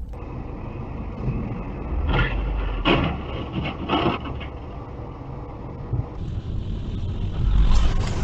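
Dashcam recording of road and engine noise heard from inside a moving vehicle, with a cluster of loud knocks and clatter about two to four seconds in.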